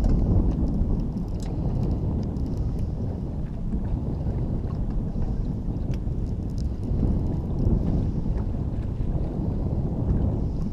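Wind buffeting the microphone as a steady low rumble, with a few faint scattered ticks.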